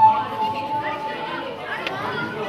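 Indistinct chatter of several people around a table. A steady high tone carries over at the start and fades out during the first second.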